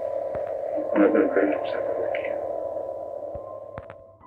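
A man's voice from an old audio tape recording, thin and radio-like, over a steady electronic drone; the sound fades down near the end, with a few sharp clicks.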